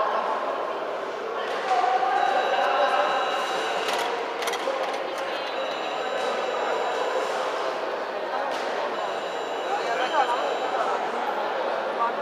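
Indistinct voices and chatter echoing in a large sports hall, with a few scattered knocks.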